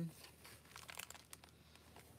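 Faint rustle of paper as the pages of a handmade junk journal are turned, with a few light crinkles about a second in.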